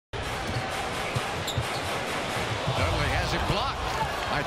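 A basketball dribbled on a hardwood court, thumping about twice a second, over the steady murmur of an arena crowd.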